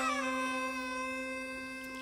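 Traditional Vietnamese instrumental accompaniment holding sustained notes over a steady low drone. One note slides down in pitch near the start, and the music slowly fades.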